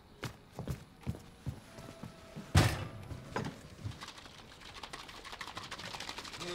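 Breakfast-table sounds of dishes and cutlery clinking and knocking: scattered light clicks, one louder thump about two and a half seconds in, and a quick run of faint ticks near the end.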